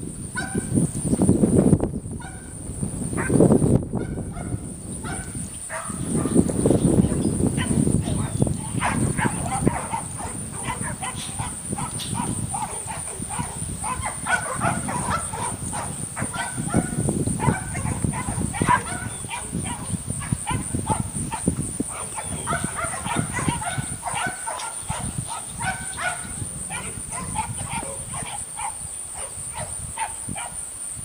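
A flock of birds calling: many short calls overlapping with no let-up, over a steady high-pitched hiss. Low rumbles come in surges during the first several seconds.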